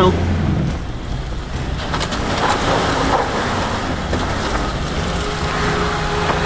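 Suzuki Samurai's small four-cylinder engine running at low speed as the 4x4 crawls through a rocky rut, with rough noise from the tyres working over rock and dirt. A thin steady whine comes in about five seconds in.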